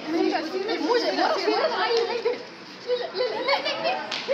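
Young women's voices talking at close range, fairly high-pitched, with a brief pause about three seconds in.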